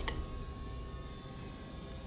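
A low, steady rumbling hum with a faint high tone over it, holding level through a pause in the dialogue.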